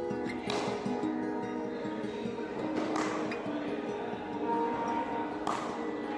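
Background music of held, sustained notes, with three sharp knocks: about half a second in, around three seconds, and near the end.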